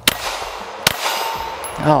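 Two 9mm pistol shots from a Walther Q5 Match, a little under a second apart, each with a short echo off the range. After the second shot a steel target rings briefly.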